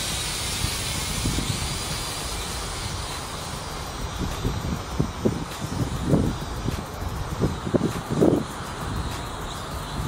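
Small quadcopter drone's propellers buzzing as it flies overhead, a steady hiss with a faint wavering whine. Gusts of wind rumble on the microphone in the second half.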